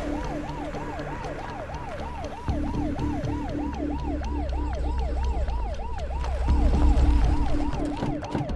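Police car siren on its fast yelp setting: a quick rising wail that drops back and repeats about three times a second, over a low rumble.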